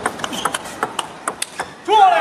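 A fast table tennis rally: a celluloid-type ball clicking sharply off bats and table about ten times in quick succession. A shout breaks out right at the end as the point finishes.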